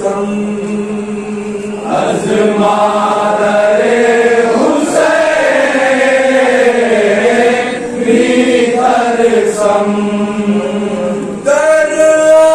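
A group of men chanting a noha, a Shia mourning lament, in unaccompanied unison with long held lines. Near the end a single lead voice takes up the recitation.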